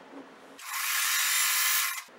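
Electric sewing machine running, stitching a seam through quilt fabric: a steady whir that starts about half a second in and stops at the end, with little low hum in it.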